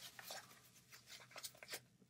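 Faint rustling and handling noise of a fabric tool-roll case as it is rolled up, a few soft scattered scrapes against near silence.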